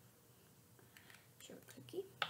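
Near silence with a low room hum, then faint whispering in the second half.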